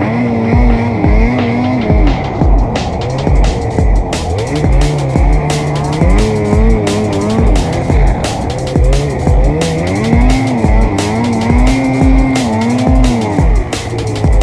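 Music with a steady beat, about two kicks a second, laid over a Ski-Doo Summit 850 two-stroke snowmobile engine revving up and down as it is ridden.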